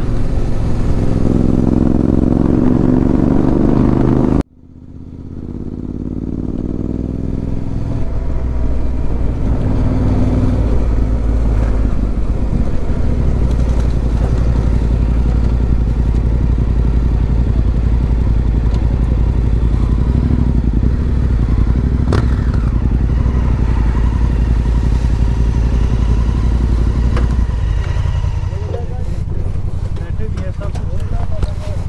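Yamaha Ténéré 700's parallel-twin engine running as the bike rolls slowly, its note falling as it slows in the first few seconds. About four seconds in the sound cuts out abruptly and fades back up, then the engine runs steadily at low speed.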